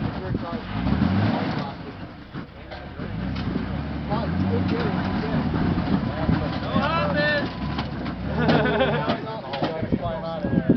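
An off-road vehicle's engine running and working up and down in pitch as it drives a trail obstacle, with voices calling out over it about seven and nine seconds in.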